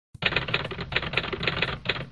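Typewriter sound effect: a rapid run of clacking key strikes, starting just after the beginning, in time with on-screen text appearing letter by letter.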